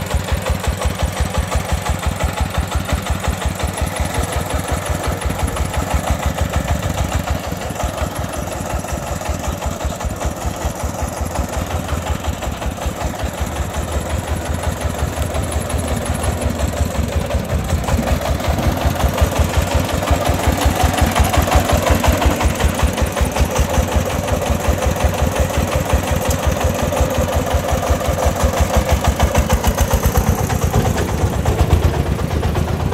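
Công nông farm truck's single-cylinder diesel engine running with an even thump of about five beats a second while its tipper bed is raised to dump a load of earth. It grows somewhat louder about two-thirds of the way through.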